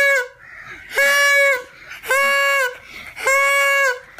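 A noisemaker honking loudly over and over to wake a sleeper: one steady-pitched honk about every second, each dropping in pitch as it ends.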